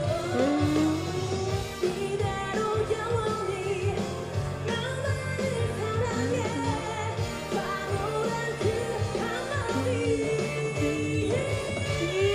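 K-pop girl group singing live with microphones over pop backing music: a female lead voice carrying the melody, sliding between notes.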